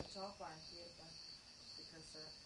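A faint, distant voice speaking off-microphone, in short phrases at the start and again near the end, over a steady high-pitched chirring.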